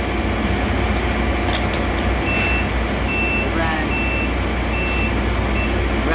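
A vehicle's reversing alarm beeping about five times, one high beep roughly every 0.8 s, starting about two seconds in, over a steady low engine drone.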